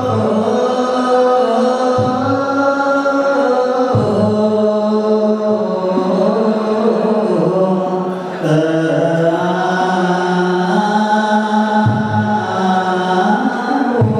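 A group of men's voices chanting together in Eritrean Orthodox Tewahedo liturgical chant, long notes held and moving slowly from pitch to pitch.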